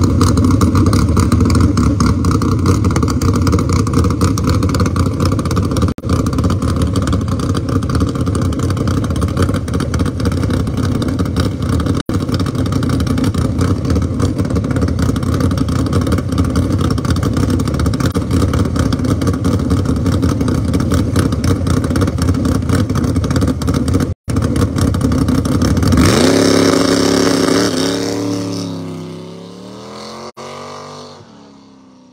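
Dodge Demon drag car's engine running loudly and steadily at the line, then about 26 seconds in it launches: the revs climb with a couple of gear changes and the sound fades as the car pulls away down the strip.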